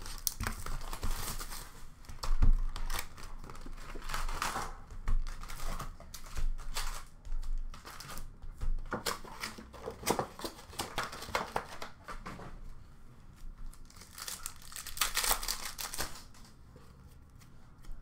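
Upper Deck hockey card packs and their box being opened by hand: wrappers ripping and crinkling, with the rustle of cards and packaging in uneven bursts. A single sharp thump about two and a half seconds in.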